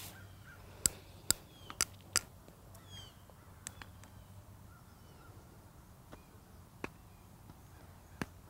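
Softballs smacking into leather gloves as players catch short tosses: sharp single pops at irregular intervals, about ten in all, the loudest about a second in. Faint bird chirps are heard a few seconds in.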